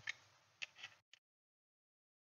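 Near silence with a few faint small clicks of a screwdriver against a metal SSD bracket during the first second or so.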